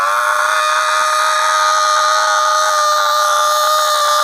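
A man's loud, long scream, held on one steady pitch without a break.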